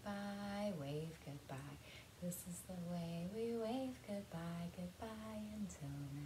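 A woman singing a simple children's goodbye song in slow held notes: "wave goodbye, wave goodbye… goodbye until next time."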